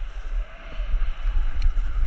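Skis sliding and scraping over packed, groomed snow at speed, with wind buffeting the microphone in an uneven low rumble.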